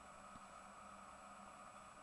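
Near silence: faint steady hiss of room tone with a thin steady high tone.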